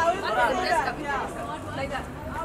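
Overlapping shouting voices of a group of photographers calling out to the people posing, with crowd chatter behind.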